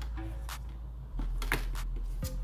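Handling noise of a hard plastic phone case and its box: a few short clicks and taps about half a second in and again near the end as the case is lifted out and the box is handled.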